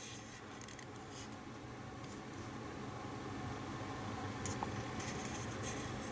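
Quiet room hum with a steady low drone that slowly grows louder, and a few faint rubs and clicks of fingers handling a die-cast model starship, one about four and a half seconds in.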